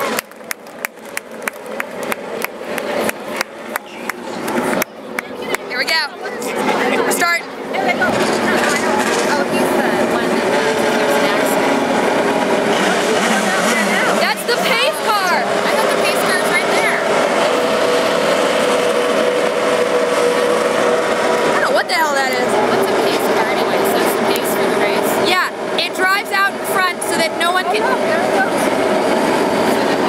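IndyCar race cars' Honda V8 engines running on the oval. The sound builds over the first several seconds and then holds, with a couple of falling sweeps in pitch as cars go past. Crowd chatter runs underneath.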